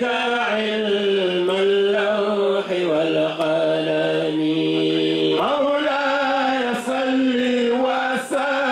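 A man's voice chanting an Islamic devotional chant into a microphone, in long held, wavering notes. About three seconds in he holds one long low note, then rises back up in pitch just after five seconds.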